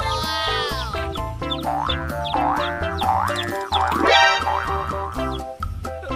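Upbeat children's background music with a steady beat, overlaid with cartoon sound effects: a falling glide at the very start, then a run of short rising boing-like glides.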